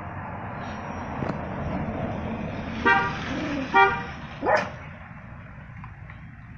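A vehicle passing with two short horn toots about a second apart, then a brief sound that sweeps sharply up in pitch.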